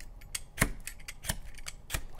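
Vegetable peeler scraping down a potato onto a stainless-steel chainmail glove: a run of sharp, irregular clicks and scrapes as the blade strikes the metal mesh without cutting through.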